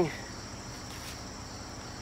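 A steady, high-pitched insect chorus trilling without a break.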